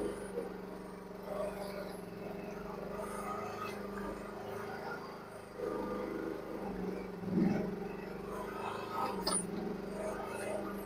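Mini excavator engine running steadily as the machine works, heard from a distance, with a couple of louder surges in the second half as it takes load.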